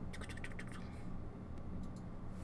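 A quick run of about ten small, sharp clicks within the first second, then two single clicks near the end, over a low steady hum.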